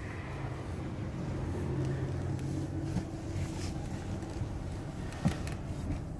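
A 2020 Chrysler Pacifica's V6 engine idling in Park, heard from inside the cabin as a steady low hum. A short click comes about five seconds in.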